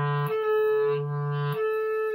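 Clarinet playing low E, flicked briefly up to the B a twelfth above by the register key, back to low E, then switching to the B and holding it. This is an overtone exercise for building strength in the upper register.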